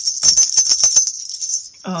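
A child's homemade shaker of small jingle bells and plastic beads strung on pipe cleaners, shaken quickly: bright jingling with rapid clicks of the beads. The shaking stops about a second in and the bells' ringing dies away.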